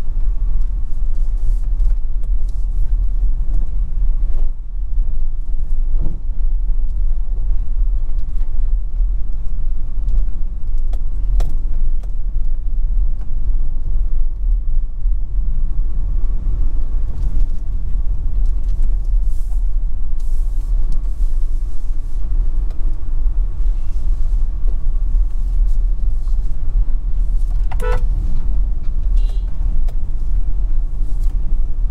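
Car driving along a rough, patched country road, with a steady low rumble of tyres and engine. A few brief knocks come through, and a short high-pitched sound occurs near the end.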